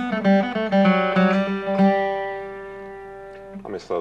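Steel-string acoustic guitar flatpicked: a quick phrase of single notes over a low ringing note, the last note held and left to fade for about a second and a half.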